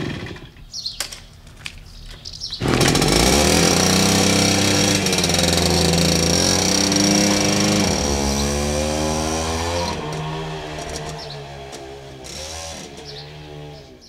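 A moped's small two-stroke engine starts about three seconds in and runs loud and steady. Its pitch shifts as it pulls away around the middle, and it fades as the moped rides off.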